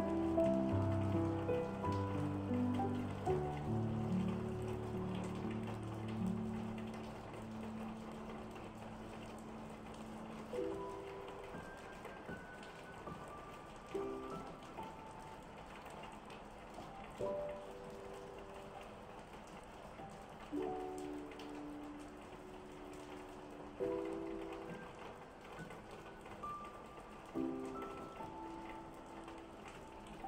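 Calm solo piano music over a steady rain track. Fuller low chords die away over the first ten seconds or so, then soft chords come about every three and a half seconds against the even patter of rain.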